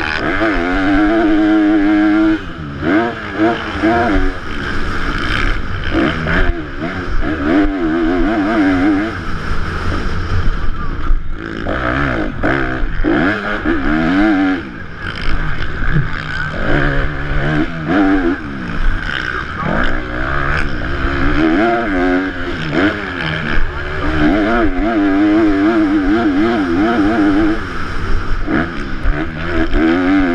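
Motocross bike engine at race pace, the note rising and falling over and over as the throttle is opened and shut, with short drops where it comes off the power. Wind rushes steadily over the helmet-mounted microphone.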